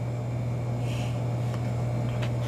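A steady low machine hum fills the room, with a soft sniff about a second in and a faint click of the cardboard takeout box being handled.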